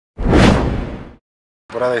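A whoosh sound effect lasting about a second, loudest at its start and fading away.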